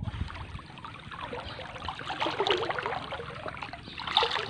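River water sloshing and splashing around two men standing chest-deep in it as they feel for fish by hand, with small uneven splashes throughout.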